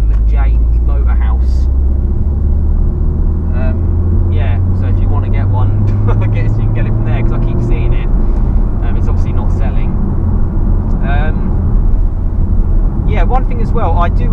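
A MK7 Golf R's turbocharged 2.0-litre four-cylinder engine, heard from inside the cabin over steady road noise. The engine note climbs slowly as the car pulls in gear, then changes with a manual gear change about halfway through.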